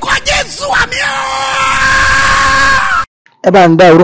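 Loud shouting voices over music, ending in one long held shout that cuts off suddenly about three seconds in. After a brief silence a man's voice comes in loud and animated, its pitch wavering.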